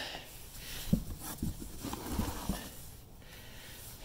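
Foam packing peanuts rustling in a cardboard box as they are dug through by hand, with a few light knocks of handling.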